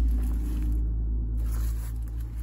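A steady low rumble, with faint rustling and scraping as a plastic-wrapped owner's manual pack is handled.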